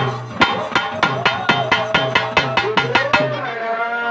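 A rope-laced double-headed drum beaten with a stick in a fast, even rhythm of about six strokes a second, over a steady ringing tone. Near the end the strokes stop and a long held note rises and then stays level.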